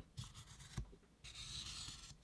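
Chisel-point Sharpie marker drawn along a ruler across a white-primed rubber target: faint scratching of the felt tip on the textured surface, in two strokes with a short pause about a second in.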